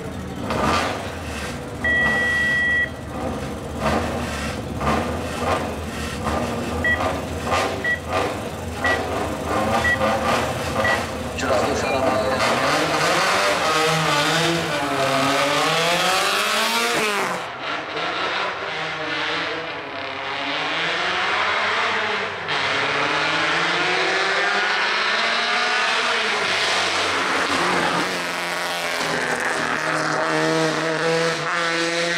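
Suzuki Swift hill-climb car on the start line, its engine revved in uneven bursts, with a long beep and then five short beeps a second apart. About twelve seconds in, the car launches at full throttle, and the engine note climbs and drops repeatedly as it shifts up through the gears. Later it is heard again accelerating hard uphill, with the revs rising and falling between shifts.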